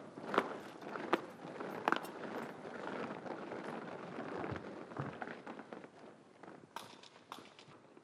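Boots of a large column of marching soldiers on an asphalt road: a steady scuffing of many footfalls with scattered sharper steps standing out, a little quieter in the second half.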